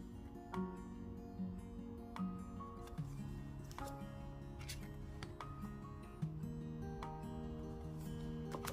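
Gentle instrumental background music: sustained low notes that change about once a second, with lighter higher notes that start sharply and fade.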